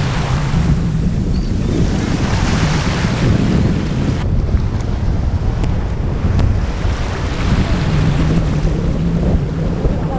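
Wind buffeting the microphone over the steady wash of surf breaking on an offshore reef, with a heavy rumble throughout.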